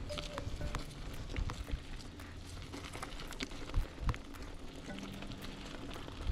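Mountain bike rolling over a leaf-covered dirt trail: rumbling tyre and trail noise with frequent sharp rattles and clicks from the bike jolting over bumps.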